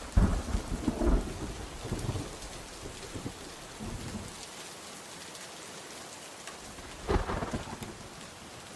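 Steady rain with rumbles of thunder, loudest in the first two seconds and again about seven seconds in.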